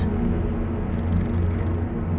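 A steady low droning hum, even and unbroken, with a faint high hiss coming in about halfway through.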